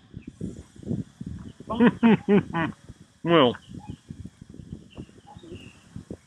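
A few short bursts of speech: a quick run of syllables about two seconds in and one more a second later, over an irregular low rumble.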